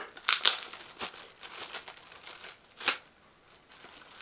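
Packaging crinkling and rustling as it is handled, in a series of short crackles, the sharpest about three seconds in.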